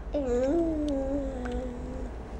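A baby's drawn-out vocal call, one long sustained sound that rises briefly and then slowly falls in pitch over about two seconds.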